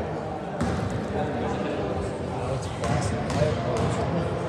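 A basketball bouncing a few times on a gym floor, with people talking in the background.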